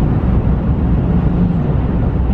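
Steady low rumble of a road vehicle driving on a paved highway, heard from inside the cab: engine and tyre noise.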